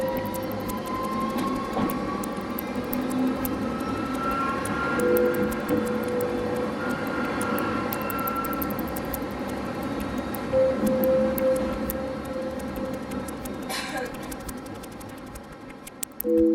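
Running noise inside a moving city tram: a steady rumble of wheels on rail, with the drive's whine rising slowly in pitch early on as it gathers speed. A brief louder burst of noise comes near the end.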